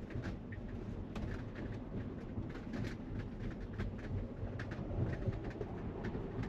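Low, steady road and tyre rumble inside the cabin of a Tesla Model Y driving on, with faint scattered ticks. The car is electric, so there is no engine note.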